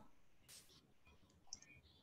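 Near silence in a pause between speakers, with two faint clicks, about half a second and a second and a half in.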